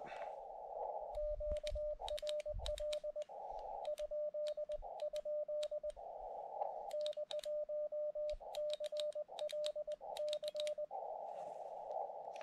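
Morse code sidetone from a portable ham radio transceiver: a steady mid-pitched tone keyed in dots and dashes, with sharp clicks from the paddle key. Between characters, a hiss of band noise comes through the receiver. The sending is a QRL? check followed by a call sign, asking whether anyone is already using the frequency.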